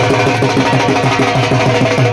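Dhol drum beaten in a fast, steady rhythm, about four strokes a second, over a sustained melody.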